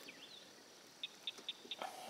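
Faint, quick high chirps from a small animal, about five in a row in the second half, over quiet outdoor background.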